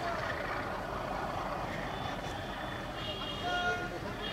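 Busy railway platform: people's voices over a steady low rumble, with a short high-pitched call or tone about three and a half seconds in.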